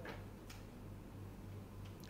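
Two faint clicks about half a second apart over a steady low hum.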